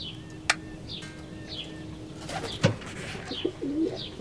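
Pigeons cooing low, with short high chirps from a small bird repeating about once a second. A sharp click comes about half a second in, and a soft thump just past the middle.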